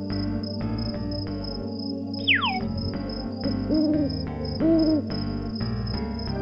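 Two owl hoots as a night-time sound effect over background music, preceded about two seconds in by a short falling whistle.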